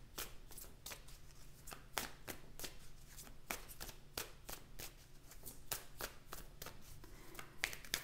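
A deck of large tarot cards shuffled by hand, cards passed from one hand into the other: a quiet, irregular run of soft card clicks and slaps, several a second.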